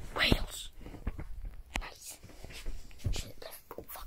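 Handling noise from a handheld phone being moved about: scattered short knocks and rubbing, with a soft, breathy whisper-like hiss near the start.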